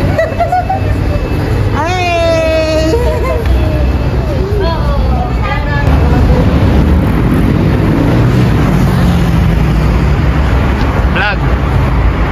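People's voices outdoors, with one long high-pitched call about two seconds in, over a steady low rumble.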